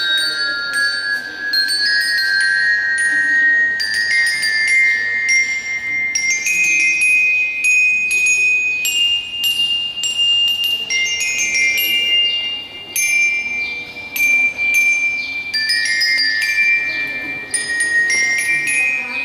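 Bell lyre (marching glockenspiel) struck with a mallet, playing a slow melody of single ringing metal notes, each left to ring on.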